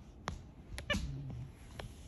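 Silicone pop-it fidget toy being pressed by a capuchin monkey's fingers: about four sharp pops spread through two seconds, with a short low animal-like vocal sound about a second in.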